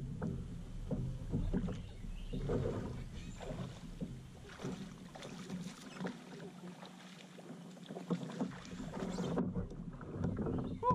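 Water lapping and splashing against a kayak hull, with many small irregular knocks and clicks. A low wind rumble on the microphone fades out midway and returns near the end.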